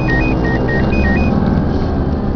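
Car running in traffic, heard from inside the cabin, with a steady low rumble. Over it comes a quick run of short, high electronic beeps that alternate between two pitches, about five a second, and stop about a second and a half in.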